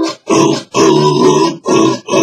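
A man grunting in rhythm over strummed ukulele chords, in short loud bursts with brief gaps between them.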